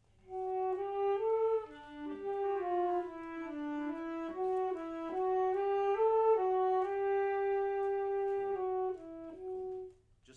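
Small wind ensemble playing a slow, smooth melodic phrase of held notes that step up and down, conducted in rehearsal. It breaks off just before the end.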